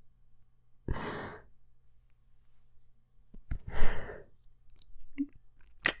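A man sighing twice close to the microphone, long breathy exhales about a second in and again at about three and a half seconds, the second louder. A short click comes near the end.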